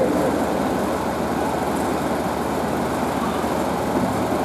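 A steady, even rushing noise with no words over it.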